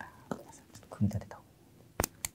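Soft speech, with a few light clicks from small metal image-stabiliser frame parts being handled.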